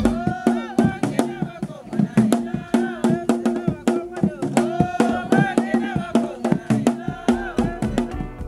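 Voices singing together over a quick, even percussion beat, like a traditional song and dance.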